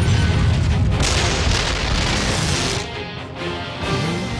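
Cartoon action music under a heavy, continuous rumbling boom sound effect as a huge volcano-shaped cannon tilts into position; the rumble eases a little near the end.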